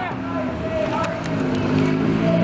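A crowd of protest marchers chanting a slogan together, several voices holding drawn-out notes.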